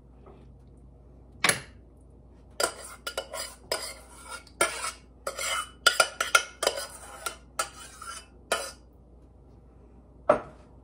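A utensil knocking and scraping against a pan and baking dish as the kielbasa and sauce are spooned out: one clank, then a quick run of clinks and scrapes for about six seconds, stopping shortly before the end.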